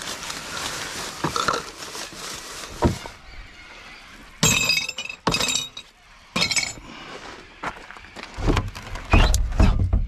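Glass bottles and cans clinking and clattering as a gloved hand rummages through a recycling bin, with three or four sharp clinks around the middle. Before that there is rustling of rubbish, and near the end there are heavier low knocks.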